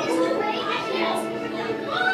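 Background music from the dark ride's soundtrack with indistinct children's voices over it, steady and unbroken.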